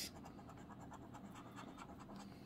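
Faint, steady scratching of a coin-shaped metal scratcher rubbing the latex coating off a paper scratch-off lottery ticket.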